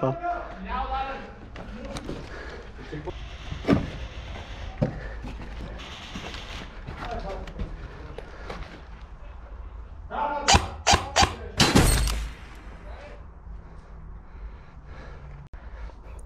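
Muffled talk between players, with single sharp clicks now and then and a quick cluster of about five sharp cracks about ten to twelve seconds in.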